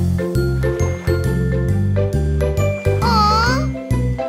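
Instrumental backing of a children's song: a steady bass line under bright, chime-like sustained notes, with a short wavering tone about three seconds in.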